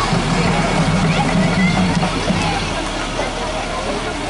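Crowd chatter along a parade route, with a truck engine running close by as a flatbed tow truck float rolls past; a steady low hum fades out about three quarters of the way through.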